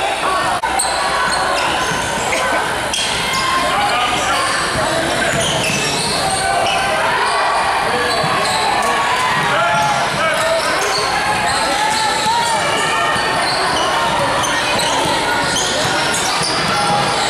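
Indoor basketball game: many voices of players and spectators calling out over one another in an echoing gym, with a basketball bouncing on the hardwood floor.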